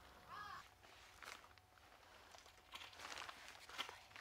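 A crow caws once, faintly, about half a second in. Then come soft, scattered rustles and scuffs of handling, a little louder near the end.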